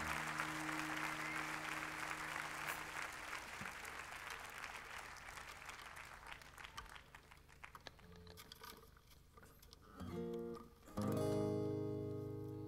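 Audience applause fading away, then an acoustic guitar: a brief chord about ten seconds in, and a strummed chord that rings on near the end.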